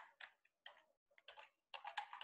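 Faint computer keyboard typing: a few scattered key clicks, coming closer together in the second half.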